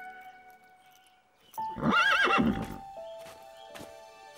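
A horse whinnies once, a loud wavering neigh lasting about a second, starting a little before the middle, over soft background music. A few light hoof clops follow.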